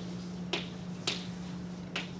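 Chalk striking a blackboard as it writes: three sharp clicks about half a second apart, over a faint steady room hum.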